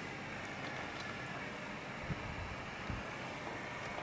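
Steady faint hiss of room tone, with two soft low thumps about two and three seconds in.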